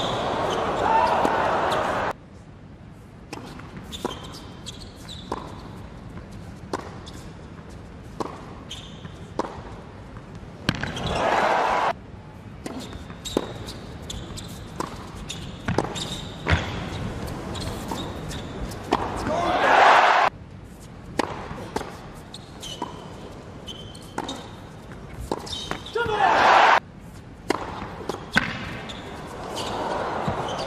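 Tennis ball struck by rackets and bouncing on an indoor hard court in rallies, a string of sharp pops. Between points an arena crowd cheers and applauds in short bursts of about a second, the loudest just before 20 s and again near 26 s.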